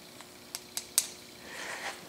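Three light, sharp clicks from the graduated micrometer collar on a horizontal mill's table handwheel as it is set to zero, the last about a second in the loudest.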